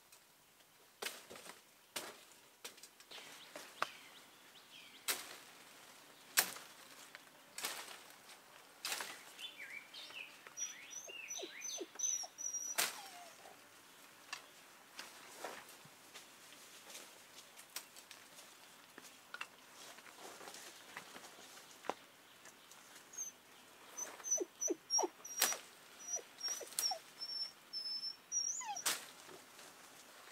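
Branches and dry undergrowth crackling and twigs snapping in irregular sharp cracks as someone pushes and climbs through dense brush. High, short chirping notes come in two spells, partway through and again near the end.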